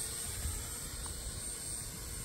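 Wind buffeting the microphone as a low rumble, with a steady thin high-pitched whine above it.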